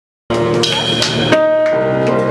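Live jazz band playing: piano, double bass, saxophone and drums, with a few cymbal hits in the first second and a half. The sound cuts in abruptly just after the start.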